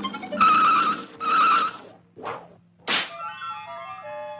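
Cartoon soundtrack sound effects over the score: two noisy swishes in the first two seconds, a sharp whip-like swish just before the three-second mark, then a short falling run of music notes.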